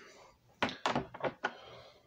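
Several short knocks and clacks, about five in under a second near the middle, as CBCS-graded comic books in hard plastic cases are handled and set down on a desk.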